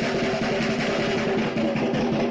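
Music with a fast, continuous drum roll over steady held tones.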